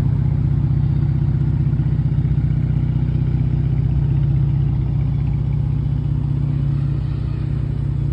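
Dodge Charger engine idling: a steady, even low rumble.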